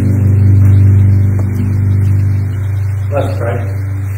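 The worship band's last chord dying away, its higher notes fading within the first half-second while a low sustained note keeps sounding. A few spoken words come briefly near the end.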